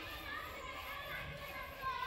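Faint, distant children's voices, calling and chattering as they play.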